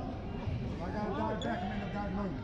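A basketball bouncing on a hardwood gym floor under nearby people talking, in a large echoing gymnasium.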